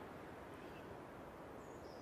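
Quiet outdoor background: a faint, steady hiss, with a brief faint high chirp near the end.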